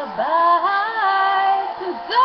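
A woman singing a rock song, holding a long note that steps up in pitch about half a second in, then dropping off briefly near the end.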